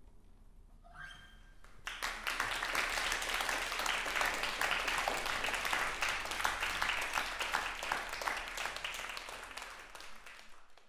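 Small audience applauding after the last notes of the music have died away; the clapping starts about two seconds in, stays thick and steady, and thins out near the end. Just before it, about a second in, a short pitched call comes from the audience.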